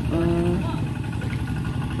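Engine of a two-wheel hand tractor tilling a paddy, running steadily with a low rumble; a voice speaks briefly at the start.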